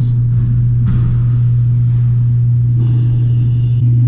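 A loud, steady low hum that does not change, with faint higher tones near the end.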